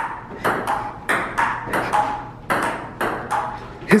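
Table tennis rally: the ball ticking back and forth off the paddles and the table in a quick, steady run of about three hits a second, some with a short ringing ping.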